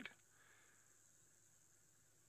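Near silence: faint background hiss only.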